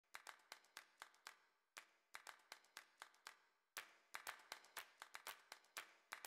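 Faint percussive intro music: sparse sharp clicks and taps, several a second, pausing briefly about a second and a half in and again about three and a half seconds in, with soft tones joining after that.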